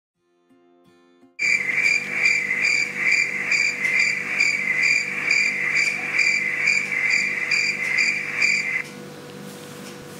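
Crickets chirping: a continuous high trill with a pulsing beat about twice a second, starting abruptly just over a second in and stopping about nine seconds in. A faint steady hiss and hum remain after it stops.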